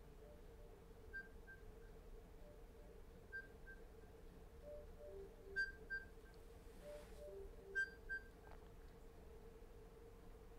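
Faint electronic timer alarm: a short pattern of paired beeps at three pitches, repeating about every two seconds and growing louder, over a steady low hum.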